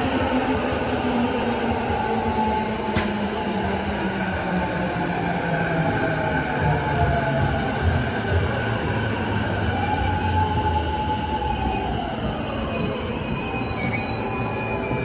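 JR East E233-series electric commuter train pulling in and braking to a stop: wheels rumbling on the rails under a motor whine that falls steadily in pitch as the train slows. A single sharp click sounds about three seconds in.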